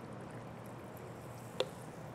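Club soda poured faintly from a plastic bottle into a small jigger, with a light click about one and a half seconds in.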